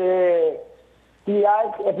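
Speech only: a drawn-out hesitation vowel held for about half a second, a short pause, then a man talking again.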